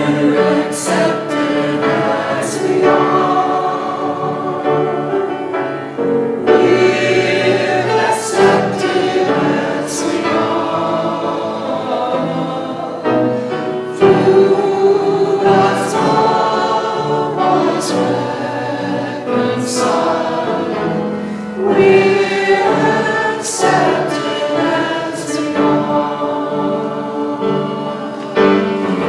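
Choir and congregation singing a hymn together, in phrases of several seconds.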